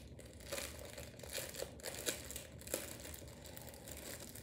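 Plastic packaging crinkling faintly as it is handled, with scattered small crackles.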